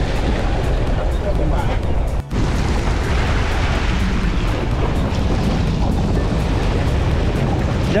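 Heavy wind buffeting over the low, steady hum of a boat engine, with water churning and splashing as a hooked yellowfin tuna thrashes at the surface beside the hull. The sound drops out for a moment about two seconds in.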